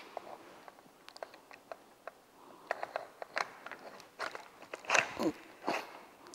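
Irregular small clicks and rattles of a camcorder's mounting plate being fitted onto a tripod's plastic quick-release head while the lock release is worked.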